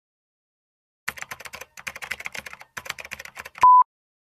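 Edited intro sound effects: rapid irregular keyboard-typing clicks for about two and a half seconds, then a short, loud, steady test-tone beep of the kind played with television colour bars.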